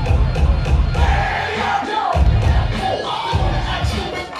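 Loud dance music with heavy, pulsing bass beats while an audience cheers and shouts over it; the beat cuts out briefly about halfway through and again near the end.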